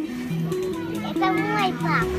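Background music with a simple stepped melody, and a child's voice rising and falling over it for a moment about a second in.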